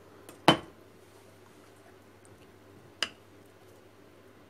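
Two sharp clinks of kitchen utensils and bowls knocking together: a loud one about half a second in and a lighter one about three seconds in, over a faint low hum.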